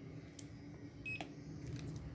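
A single short electronic beep about a second in from the buzzer of an Arduino RFID reader setup as an RFID card is read, signalling that the card was accepted. Faint clicks from handling the card come before and just after it.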